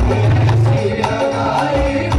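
Live qawwali music: harmonium and tabla playing, with a singer's voice carried over the hand-held microphone and a regular drum beat.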